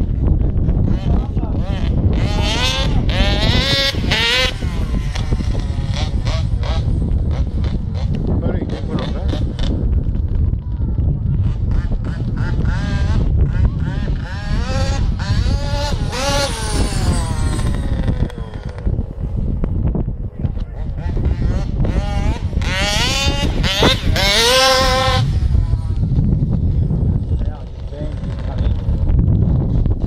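A 50cc two-stroke engine in an HPI Baja RC car revving up and down in three main bursts, its pitch wavering and gliding as the car speeds up and slows, over a steady low wind rumble on the microphone.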